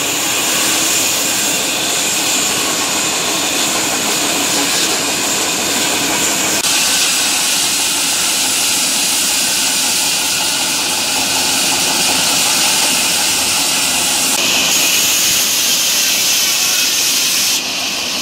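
Large band saw running, its blade cutting through a wooden log: a loud, steady rushing noise whose tone shifts a few times.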